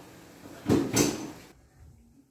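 Two short knocks about a quarter second apart, a little under a second in: a kitchen cabinet's drawer or door being bumped as a small child climbs it.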